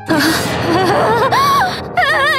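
A woman's voice-acted sharp, panicked gasp that breaks into a trembling cry of 'ah… aaah', its pitch wavering up and down, the sound of a mental breakdown.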